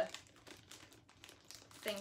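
Faint, scattered crinkling of packaging being handled around a small rug.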